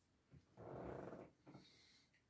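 Faint breathing out from a man after a sip of coffee: a brief puff, then a soft exhale lasting almost a second, then a weaker one.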